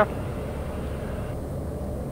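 Steady cabin drone of a TBM 910 in flight, its Pratt & Whitney PT6A turboprop and the airflow heard at reduced approach power with the gear down, with a faint steady tone in it. The upper hiss drops away a little past the middle.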